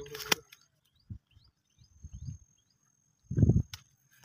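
Handling noise from a caught fish being held and worked free of a net: a few low dull thumps, the loudest a short rumbling thud near the end followed by a click. Faint high chirps and a thin steady high whine sit behind it.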